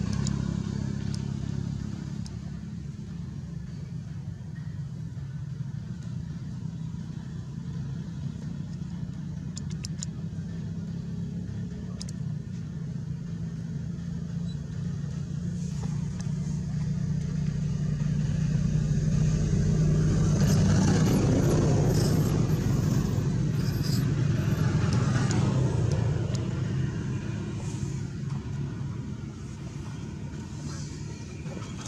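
A motor vehicle's engine running steadily, growing louder about two-thirds of the way through and then fading, as if passing by.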